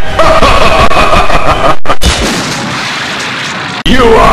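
Loud explosion-like noise with a few held tones over it for about two seconds, then a quieter stretch of noise that cuts off suddenly just before the end.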